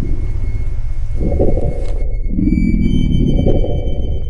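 Ominous horror film score: a constant low rumble with a low throbbing pulse repeating about every two seconds. About halfway through, a hiss cuts off and thin, held high tones come in.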